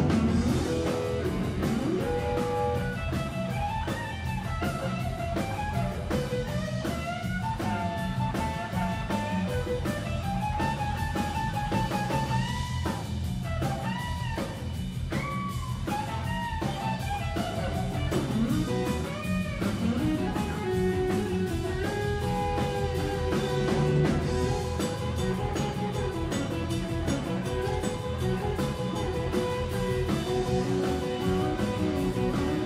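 Live blues band playing: an electric guitar solo with bent notes, including a run of repeated high bends in the middle, over electric bass and drum kit.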